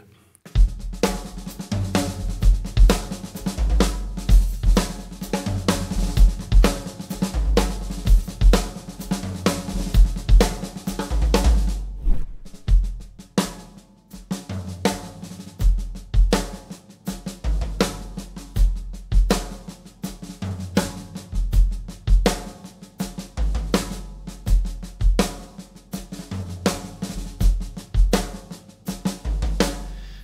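Rock drum kit played in a driving groove built from kick drum, snare and toms, with strokes moving around the toms.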